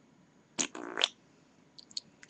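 A short, buzzy fart noise about half a second in, lasting about half a second, starting and stopping sharply.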